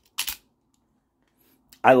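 Remette Swordfish gravity knife's spring action snapping back with a single sharp click about a quarter second in.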